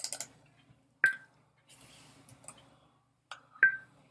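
A handful of short, irregular clicks from a computer mouse, a few of them with a brief ring.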